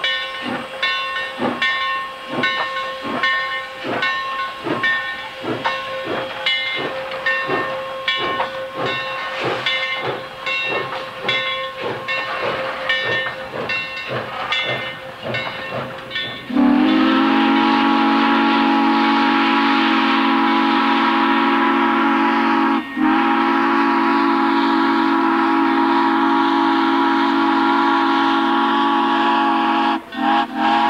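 Steam locomotive, the 2-8-0 No. 17, chuffing steadily at about two beats a second over a steady whine. About 16 seconds in its multi-note steam whistle sounds loudly and holds, with one very short break, and is still sounding at the end.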